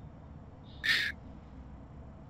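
One short, sharp sniffle, a quick breath in through the nose from a woman who is crying, about a second in, over low room noise.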